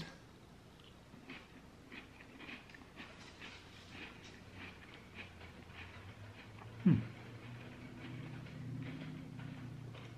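Quiet chewing of a Ritz cracker with pimento cheese spread: soft crunches and wet mouth clicks scattered through the first six seconds. About seven seconds in comes a short "hmm", then a low humming while chewing goes on.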